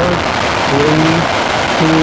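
Space Shuttle Discovery's three liquid-fuelled main engines running in the seconds after main engine start, a loud, steady, even noise with no rise or break. The solid rocket boosters have not yet lit.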